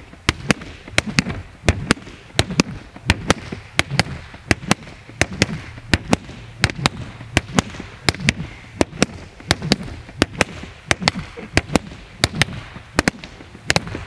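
A pair of rattan Kali sticks striking a BOB training dummy over and over in fluid angle-one and angle-four strikes: a steady run of sharp cracks, about three a second and often in quick pairs.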